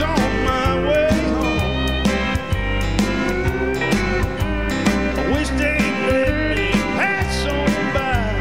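Live country band playing a song: electric guitar with bending notes over keyboard and drums keeping a steady beat.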